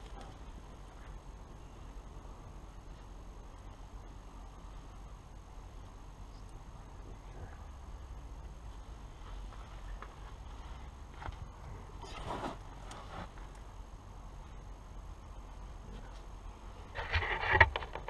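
Faint steady outdoor background with a few soft clicks, as a person moves about and handles a canvas flap. A brief rustle comes about two-thirds of the way in, and louder rustling and knocking near the end as he kneels down.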